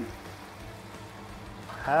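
Low, steady hiss of hot oil bubbling in a deep fryer with chicken frying in it.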